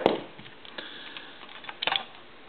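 Light plastic clicks from the push buttons of a loose telephone keypad being pressed and handled: a few scattered clicks, then a quick cluster of sharper clicks near the end.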